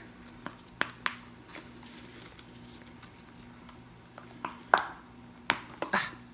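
Soft clicks and rubbing as gloved hands flex a silicone soap mold and push a soap bar out of it: a few light clicks in the first second or two, then a louder cluster about four and a half seconds in. A faint steady hum runs underneath.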